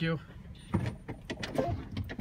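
Several short clicks and knocks, close together, in the second half.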